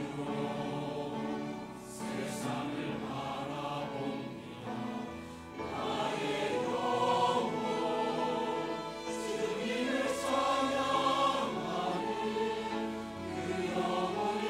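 A large mixed church choir of men and women sings a Korean anthem in Korean, with instrumental accompaniment. It gets louder from about six seconds in.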